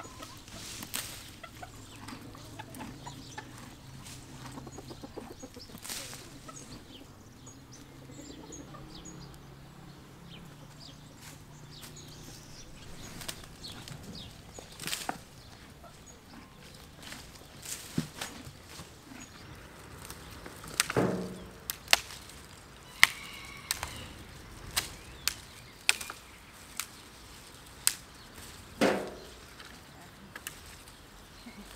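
Hens clucking while horses munch fresh cane leaves. In the second half comes a series of sharp cracks and snaps, loudest a little past the middle and again near the end.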